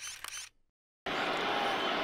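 A camera-shutter sound effect, a quick cluster of clicks lasting about half a second, then a brief silence. About a second in, steady stadium crowd noise starts.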